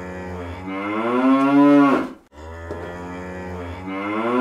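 A cow mooing: one long call that rises in pitch and breaks off about two seconds in, then the same call starting again.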